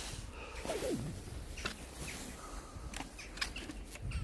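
Light scuffing and rustling as someone steps up onto the snowy footplates of an outdoor air-walker exercise machine, with a few faint knocks and a short falling squeak about three quarters of a second in.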